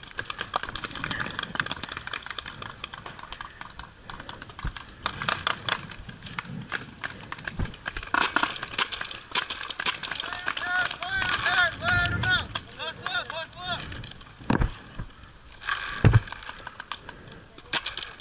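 Paintball markers firing around the field: scattered sharp pops and clicks throughout, with distant players shouting partway through. Two louder, sharp pops come near the end.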